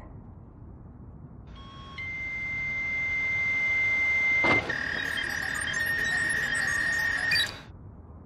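A steady high electronic tone that swells for about two and a half seconds, a sharp click, then a slightly lower tone that holds for about three seconds and cuts off suddenly.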